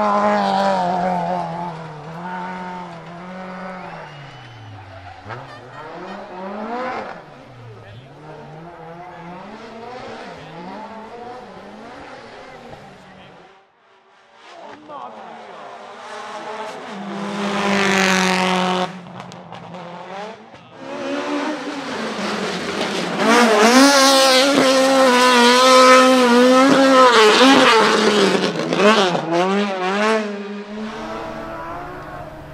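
Rally cars driven hard one after another, their engines revving high and dropping through gear changes and lifts off the throttle. The loudest is a car accelerating flat out through the last several seconds.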